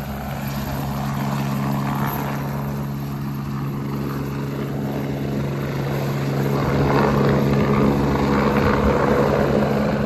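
Leonardo AW109 Trekker twin-turbine helicopter flying low, its rotor and engines running with a steady low beat, growing louder from about seven seconds in as it comes nearer.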